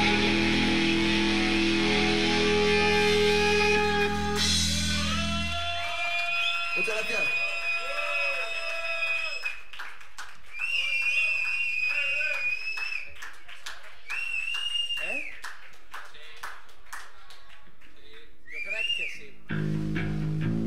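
Live rock band with distorted electric guitars playing loudly, then ringing out and stopping about five seconds in. A quieter stretch follows of held, whining electric-guitar tones that bend up and down in pitch, with scattered clicks, until the full band comes back in right at the end.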